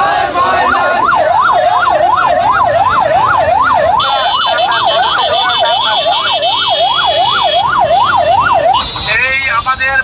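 An electronic siren wailing in a fast up-and-down yelp, about three sweeps a second. It cuts off sharply just before the end, and shouting voices take over.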